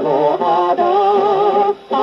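A 1950 78 rpm shellac record playing through the mechanical soundbox of a Paragon Model No. 90 acoustic phonograph, giving a thin, narrow-band popular-song recording. A wavering, vibrato-laden melody line carries over the accompaniment, with a short break near the end.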